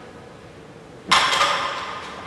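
A loaded barbell is set down on the gym floor about a second in: one sudden metallic clank from the weight plates, which rings on briefly as it fades.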